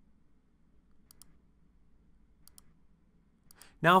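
Faint computer mouse clicks, in two quick pairs and then a single click, over a low background hum; a man's voice starts right at the end.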